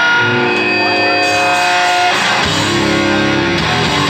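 Distorted electric guitar chords ringing out live through a club PA, the opening of a hardcore song; the chord changes about two seconds in and the low end fills out soon after.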